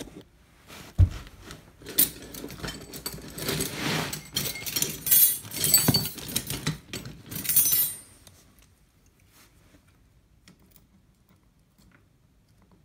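Metal tools clinking and clattering as they are handled and rummaged through, after a thump about a second in. The clatter stops about eight seconds in.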